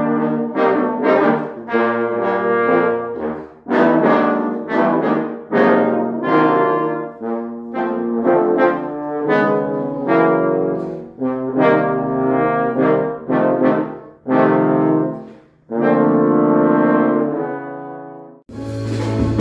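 A trio of trombones playing a chamber piece in harmony, several notes sounding together in phrases broken by short pauses, the last chord dying away near the end.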